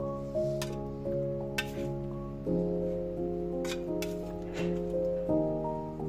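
Background music of sustained chords that change every second or two. Over it come about five light clicks and clinks from a metal utensil working filling into the bread.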